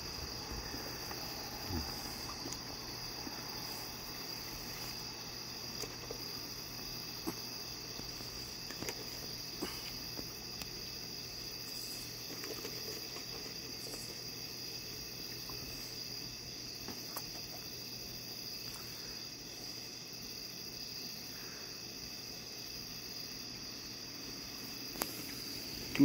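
Steady high-pitched chorus of crickets, with a few faint scattered clicks and crunches as raccoons eat dry food.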